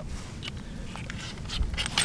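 Faint light ticks and scrapes from handling a crossbow scope's windage turret, its cap being threaded back on after a sight-in adjustment, with a low rumble underneath.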